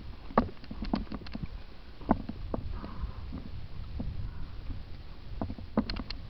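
Mountain bike riding over a rocky dirt trail: a steady low rumble from the tyres and wind on the microphone, with scattered sharp knocks and rattles from the bike, more of them in the first couple of seconds.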